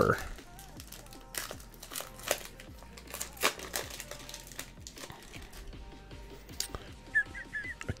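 A Score football card pack's wrapper crinkling and tearing as gloved hands open it and slide the cards out. The sound is a scatter of soft crackles and clicks.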